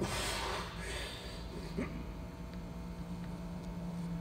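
A forceful breath as a lifter braces under a heavy barbell for a front squat, then a brief 'yeah' and a laugh. A low steady hum comes in near the halfway point.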